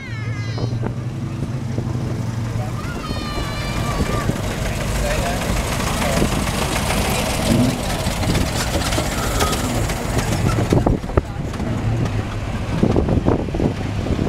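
Antique and classic car engines running as the cars roll slowly past at close range, with a steady low engine hum at first and a denser stretch of engine and road noise in the middle, amid people's chatter.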